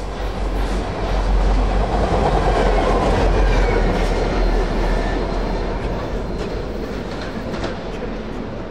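A pair of EMD 'Geep' diesel locomotives passing: a low diesel engine drone with wheel and rail rumble that swells about a second in, is loudest for a few seconds, then slowly fades.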